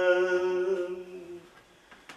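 Unaccompanied man's voice singing a lullaby, holding one long steady note that fades out about a second and a half in.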